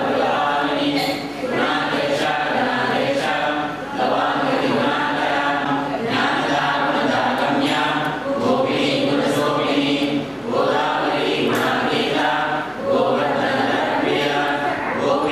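A group of voices chanting together in unison, in repeated phrases with short breaks every few seconds.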